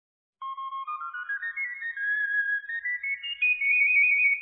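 A flabiol, the small Catalan flute, plays the solo opening of a sardana. It enters about half a second in, and its single high line climbs note by note.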